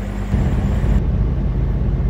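Diesel engine of a Freightliner Cascadia semi tractor running after a successful jump start from the reefer battery: a steady low rumble heard from inside the cab. It comes in loudly just after the start, taking over from a lighter steady hum.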